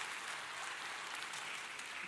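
Audience applauding: a steady, even wash of many hands clapping at once.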